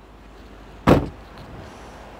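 A car door shut once, a single solid thud about a second in, against a low steady outdoor background.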